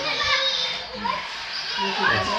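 Young children's voices as they play, mixed with general room chatter.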